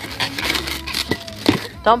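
Rubber balloon being squeezed and rubbed by a small child's hands, a run of crackling and rubbing noise with a few sharp taps, the loudest about one and a half seconds in.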